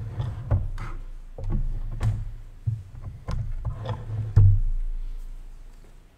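A run of irregular dull thumps and sharp knocks over a low rumble, like handling noise on a microphone. The loudest knock comes about four and a half seconds in, and its rumble dies away after it.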